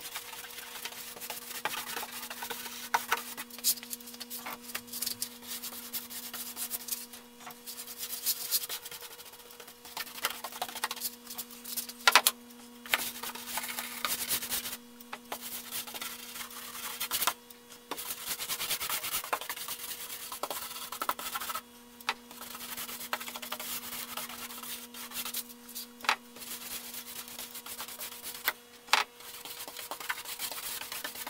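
A paintbrush's bristles stroking back and forth over a wet painted six-panel door, in repeated swishing strokes with short pauses and a few sharp knocks, over a steady low hum.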